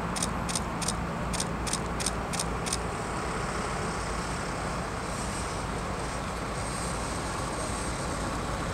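Steady city traffic noise, an even rumble and hiss, with a row of faint, evenly spaced high clicks through the first three seconds.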